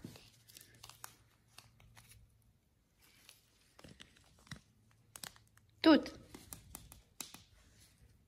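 Faint plastic crinkling and light clicks from a small clear tube of dried cat herb being shaken out, in short scattered bits.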